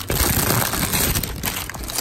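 Plastic candy wrapper crinkling loudly close to the microphone, strongest in the first second and a half, as Reese's candy is handled and opened.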